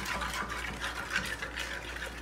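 Metal spoon beating eggs in a nonstick frying pan: quick, rapid strokes clicking and scraping against the pan.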